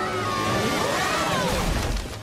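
Cartoon sound effect of a fishing boat rushing through the water and running aground: a dense rushing noise that ends in a deep rumble as the hull grinds up onto the beach.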